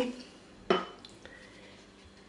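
A spoon clinks once against a small glass bowl of water about a second in, followed by a lighter tick.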